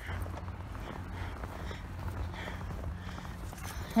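Footsteps walking through deep snow, soft irregular steps over a steady low rumble.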